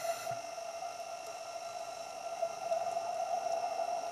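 Steady underwater hum: a constant mid-pitched tone with fainter higher tones over a low hiss, and a few faint clicks, as picked up by a camera in an underwater housing.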